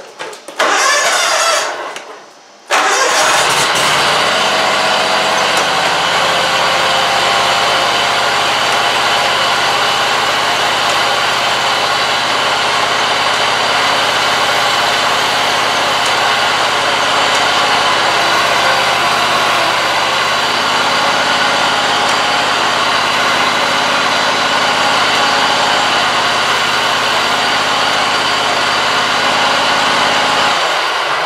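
A Scag Tiger Cub zero-turn mower's engine is cranked, catches about three seconds in, and then runs steadily and loudly. It is being run to test the hydrostatic steering linkage just adjusted.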